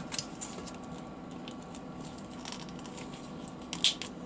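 Plastic action figure being handled: quiet rubbing and small clicks of fingers on the plastic body, then a couple of sharper plastic clicks near the end as the torso is pulled apart at the waist joint.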